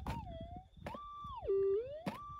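Minelab GPX 5000 metal detector's audio signal as its Sadie coil is passed over a bedrock crevice: a single tone that wavers and glides in pitch, falls steeply to a louder low tone about halfway through, then rises again near the end. The response marks a small gold target in the crevice.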